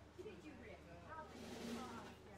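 Faint off-mic voices talking between songs, with a brief hiss in the second half.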